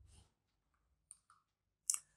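Quiet, with a few faint ticks and one sharp click near the end: a finger tapping an interactive display's on-screen toolbar.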